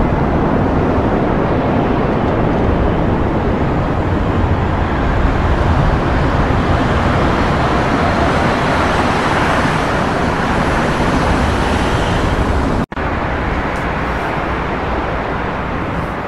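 Steady, dense noise of road traffic on nearby motorway viaducts. About 13 s in it cuts out for an instant and then carries on slightly quieter.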